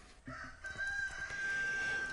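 A rooster crowing in the distance: one long, faint call at a fairly steady pitch, starting about half a second in.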